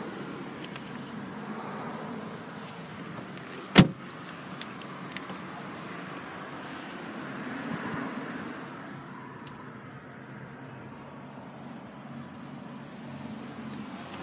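Low steady background noise inside a parked car's cabin, with one sharp knock about four seconds in.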